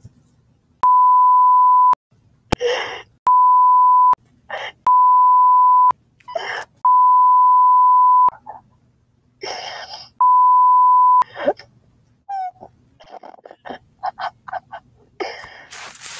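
Five censor bleeps, each a steady, loud, mid-pitched beep tone about a second long, laid over a person's voice. Short bursts of yelling come through between them. Fainter scattered clicks and brief noises follow in the last few seconds.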